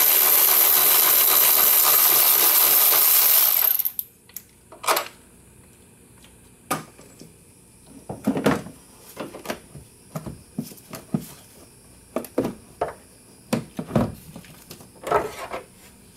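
Cordless ratchet running steadily for about four seconds as it backs out the 14 mm battery hold-down bolt, then stopping suddenly. A series of scattered metallic clinks and knocks follows while the loosened parts and the battery are handled.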